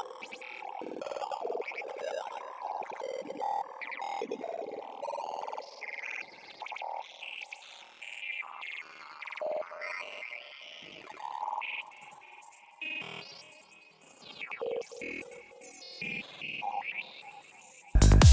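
A soloed Serum software-synth effect patch on a 'Gurglers' wavetable, playing short, irregular blips and swells in the mid and upper range with no bass or drums under it, its wavetable and formant filter being adjusted. Right at the end the full psytrance mix comes in much louder.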